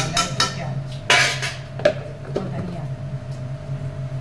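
A metal spoon clinking and scraping against kitchen utensils and containers while spices are added. There are a few sharp clinks, the loudest a scraping rattle about a second in, over a steady low hum.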